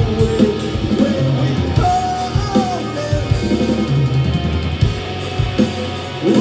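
A rock band playing live: a loud drum kit with electric guitars and bass playing together.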